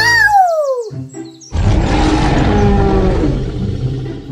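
Dinosaur roar sound effects: a pitched screech falling steadily over about a second, then after a short gap a loud, deep roar lasting about two seconds.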